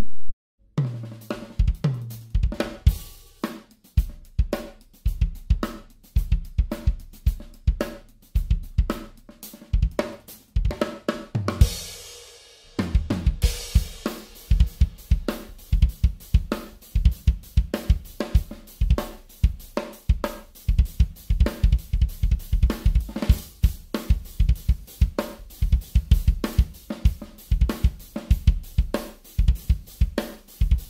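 Full drum kit played in a groove, the bass drum struck by an AHEAD Switch Kick Starter System beater on its black side, with snare, hi-hat and cymbals. A short cymbal wash about twelve seconds in leads into a busier, steady beat.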